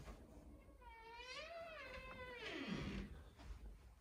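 A domestic cat gives a single long meow that rises in pitch, holds, then slides down at the end.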